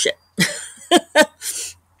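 A woman laughing briefly, in about four short, breathy pulses over a second and a half.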